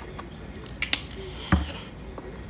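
Two quick sharp clicks just before the middle, then one heavier knock with a dull thud about one and a half seconds in, over low room noise.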